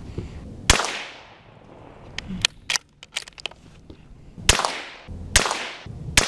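Three shots from a scoped Marlin .22 rifle firing CCI Mini-Mag .22 LR hollow points: one under a second in, then two near the end about a second apart, each sharp crack trailing off in a short echo. A few light clicks come between the first and second shots.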